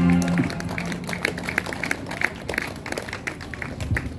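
The last held chord of a live band's song dies away, followed by scattered applause from a small audience, clapping irregularly.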